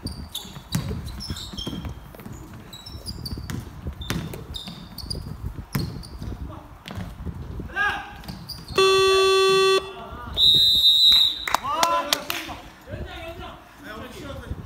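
Basketball dribbling and sneaker squeaks on a gym's hardwood floor. About nine seconds in, the electronic scoreboard buzzer sounds one steady tone for about a second as the clock runs out. It is followed at once by loud, shrill shouting.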